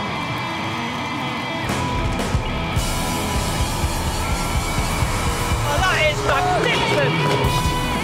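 Live rock band playing electric guitars, bass guitar and drums, with the audience cheering and whooping. About six seconds in come a few sliding, wavering high notes.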